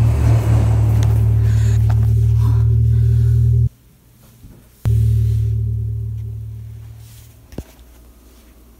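Loud, deep horror-film drone, cut off suddenly about three and a half seconds in. After a click a second later it comes back and slowly fades away, with another click near the end.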